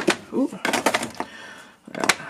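Spice bottles knocking and clicking against each other as they are pulled from a cabinet shelf, with a quick run of clicks about a second in.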